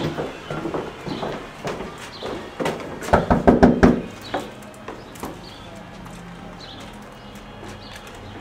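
Quick knocking on an apartment door, about seven raps in under a second, a few seconds in.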